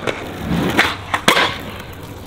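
Skateboard wheels rolling on concrete, then the pop of the tail about 0.8 seconds in and a louder clack of the board landing about half a second later, as a back three is landed.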